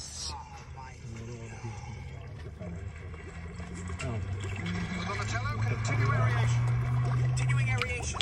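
Muffled voices over a low, steady hum inside a car cabin, with a stronger low hummed tone in the second half.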